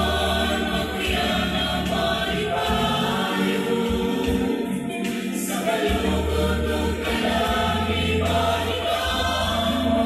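Choral music: a choir singing slow, sustained chords.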